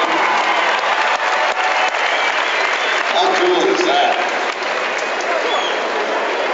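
Crowd applauding, a steady patter of many hands clapping, with voices calling out over it.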